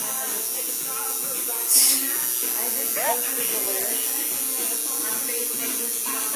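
Tattoo machine buzzing steadily as it inks skin, with a brief hiss about two seconds in.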